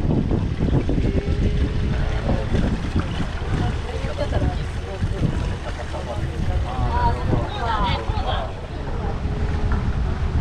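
Wind rushing on the microphone and water running along the hull of a moving river sightseeing boat, a steady low rumble, with people talking briefly about seven seconds in.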